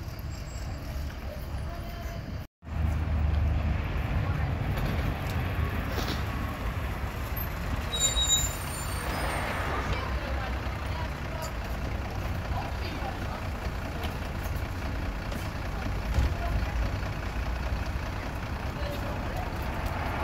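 City bus diesel engines running at a stop, a low steady rumble. After a cut a few seconds in, a second bus idles at the stop, and about eight seconds in there is a short squeal and a burst of compressed-air hiss from its air system.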